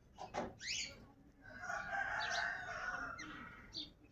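Rose-ringed parakeets give a few short, sharp rising squawks, and about a second and a half in a long drawn-out bird call of nearly two seconds, the loudest sound here, rings out.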